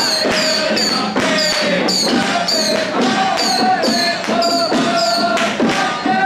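Procession troupe beating small handheld drums with ringing percussion in a steady beat, about two strokes a second, with men's voices chanting along.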